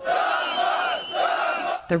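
A large crowd of men chanting a slogan in unison, in about three drawn-out shouted syllables.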